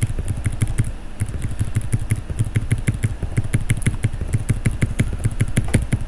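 Computer keyboard keys tapped in fast, even succession, about six keystrokes a second, each a short click with a soft thump.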